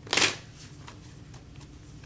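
A deck of tarot cards shuffled by hand: one brief burst of shuffling right at the start, followed by a few faint card clicks.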